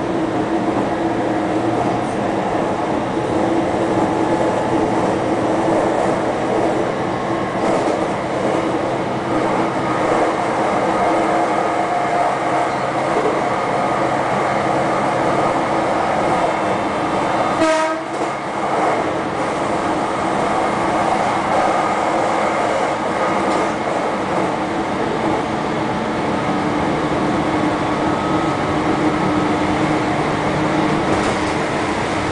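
JR Kyushu 813 series electric train running at speed, heard from just behind the driver's cab: a steady rumble of wheels on rail and motor noise with a held tone. About eighteen seconds in there is one brief sharp sound with a short dip in the running noise.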